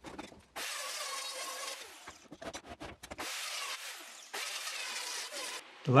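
Handheld circular saw cutting through Douglas fir boards in two spells, the first about a second and a half and the second about two and a half seconds, with a few clicks and knocks between them.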